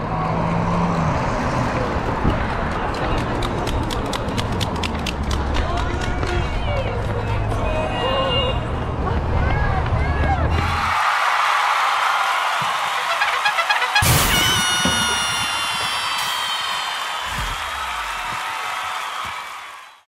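Wind rumble and jolting footfalls on a camera carried by a runner, with voices around. About halfway through, this cuts off abruptly to music, which fades out at the end.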